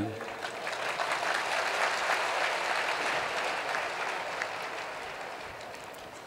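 A large seated crowd applauding. The clapping builds over the first couple of seconds, then slowly fades.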